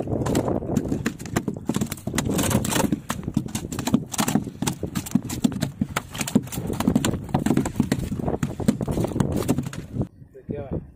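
Dense, irregular knocking and slapping of a freshly caught goldlined seabream being worked out of the net and flapping on the boat's deck.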